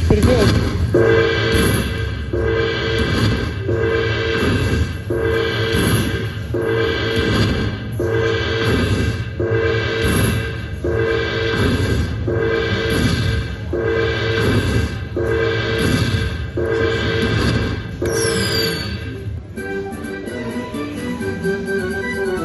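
Aristocrat Dragon Link slot machine playing its bonus-win celebration music while the award counts up: a short jingle that repeats about once a second. A brief whistling sweep comes near the end of the loop, and then the tune changes to a quieter, different melody for the last couple of seconds.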